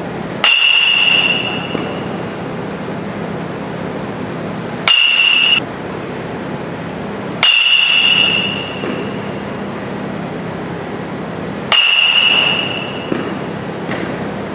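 Metal baseball bat hitting pitched balls four times, a few seconds apart. Each hit is a sharp crack followed by a high ringing ping that fades over about a second, heard over a steady background hum.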